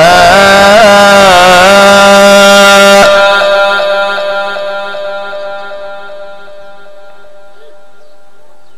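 Male Quran reciter's voice through a microphone and loudspeakers, holding a long ornamented note at the end of a verse, its pitch wavering and then held before it stops abruptly about three seconds in. The sound system's echo rings on and fades away over the next few seconds.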